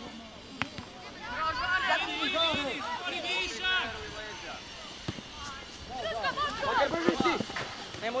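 Young footballers' voices shouting and calling across the pitch, indistinct, with a football kicked sharply twice, about half a second in and again about five seconds in.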